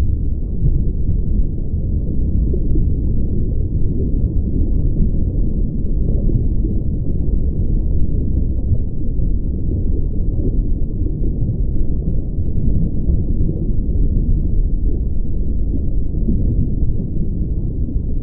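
A steady, loud, low rumbling noise, muffled above the low end, with no tune, beat or pitch in it.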